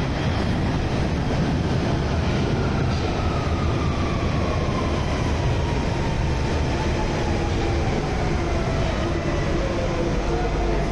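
London Underground tube train pulling into the platform: a loud steady rumble and rush of the cars passing close by, with a motor whine that falls slowly in pitch as the train slows to a stop.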